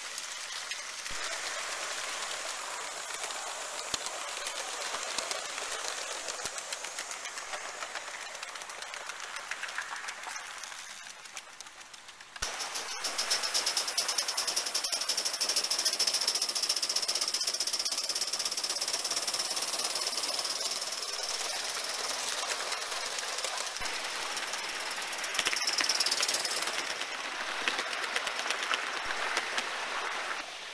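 Gauge 1 live-steam model locomotives: a fast, even stream of exhaust beats over steam hiss. From about twelve seconds in the sound is louder, with a steady high-pitched steam hiss on top that swells about 26 seconds in and fades soon after.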